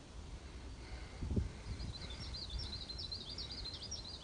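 A small songbird singing a fast run of short, high chirping notes that starts about one and a half seconds in, over a steady low rumble with one dull thump about a second in.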